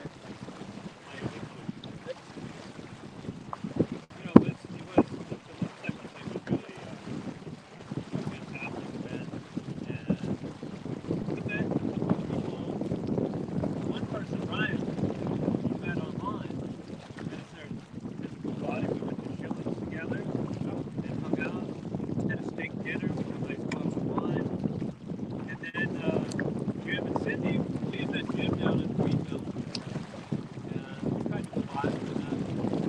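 Wind buffeting the microphone and water rushing along the hull of a small sailboat under sail, heavier in the second half, with a sharp knock about four seconds in.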